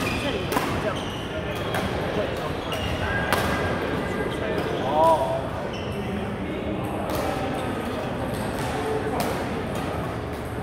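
Badminton play in a large, echoing sports hall: sharp racket strikes on shuttlecocks at irregular intervals, with a babble of players' voices from the surrounding courts. A short rising-and-falling squeak about five seconds in is the loudest sound.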